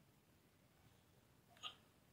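Near silence: room tone, broken near the end by one brief, faint sound.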